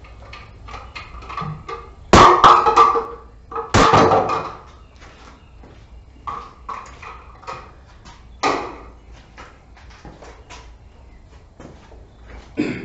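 Knocks and footsteps from someone moving around a bare stud-framed room while handling plastic electrical boxes. Two loud knocks about a second and a half apart each ring briefly, and a lighter knock comes later, among scattered small taps and steps.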